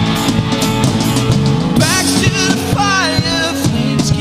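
Indie rock band playing live: drum kit, bass and guitars in a full, steady mix. From about two seconds in, a high melodic line bends and wavers over the band for a couple of seconds.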